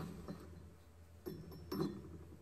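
Thick etched glass tumblers tapped and ringing with clear, high, sustained tones: one short ring at the start and a longer ring from about a second in. This is the ring test for lead crystal, and these glasses ring despite their thickness.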